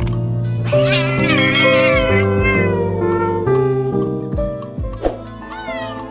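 Background music with a cat's meowing laid over it: a drawn-out, wavering meowing in the first half and another meow near the end.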